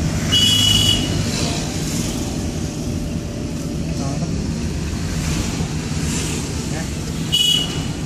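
Car driving on a town road, heard from inside the cabin: steady engine and tyre rumble, with two short high-pitched beeps, one about half a second in and one near the end.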